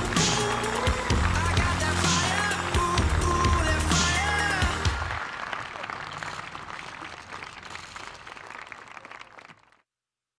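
Edited-in background music with a strong bass line and a crash about every two seconds. The bass drops out about five seconds in, and the rest fades away to silence just before the end.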